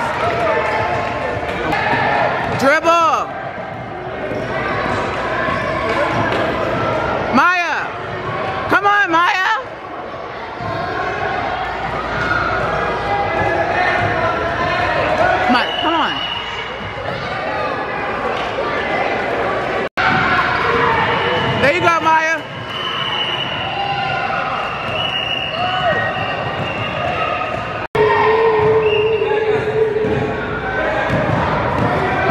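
Youth basketball game in a gymnasium: a basketball bouncing on the hardwood floor and sneakers squeaking several times as players cut and stop, over the chatter of spectators' voices.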